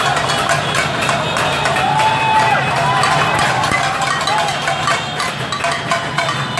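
Street packed with motorbikes: many engines running together, with horns, raised voices and a steady run of quick knocks and bangs.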